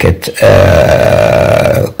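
A man's voice holding one long, level hesitation sound ('aaah'), about a second and a half, a filled pause in speech.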